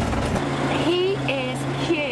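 Motorhome engine and road noise: a low rumble that gives way about half a second in to a steady low engine hum, with indistinct voices over it.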